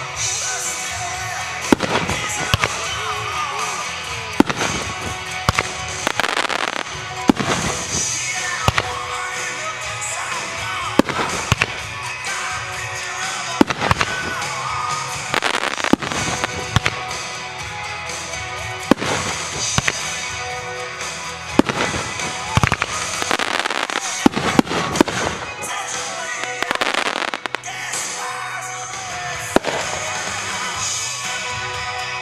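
Aerial firework shells bursting in the sky: sharp bangs at uneven spacing, roughly one every second or two, some in quick clusters. Music plays underneath throughout.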